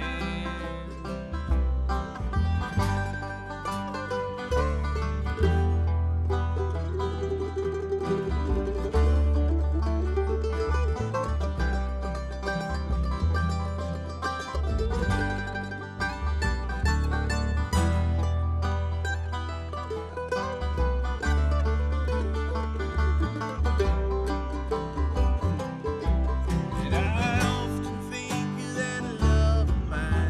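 Bluegrass string band playing an instrumental passage: banjo, mandolin and acoustic guitars picking quick notes over an upright bass.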